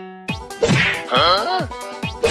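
A sharp whack-like hit, then a pitched sound that wobbles up and down in pitch, over background music.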